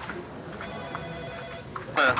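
A telephone ringing once, a single steady ring lasting about a second.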